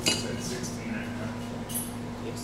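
Small metal parts clinking and being handled on a workbench, with a sharp click at the start, over a steady low hum.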